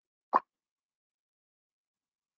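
A single short pop about a third of a second in, with silence around it.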